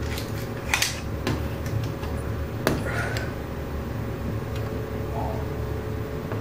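A few sharp clicks and taps from a tape measure and pencil being handled against a level held on the wall. The loudest click is a little before the middle. A steady low hum runs underneath.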